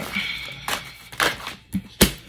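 Tarot cards shuffled and handled, giving a few short sharp snaps and flicks, with a card laid down on the table near the end.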